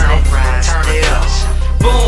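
Hip-hop track: a deep, sustained bass note runs under a bending melodic line, and a fresh bass hit comes in near the end.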